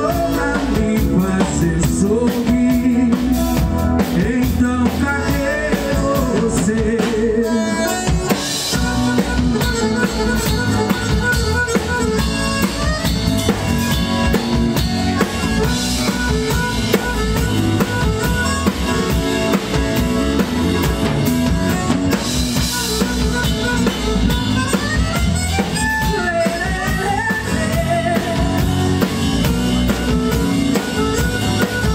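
Live forró band playing at full volume with a steady beat: piano accordion over drum kit, electric bass and acoustic guitar.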